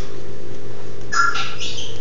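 A Chihuahua puppy with a cleft palate gives one short, high squeaky call about a second in, lasting under a second.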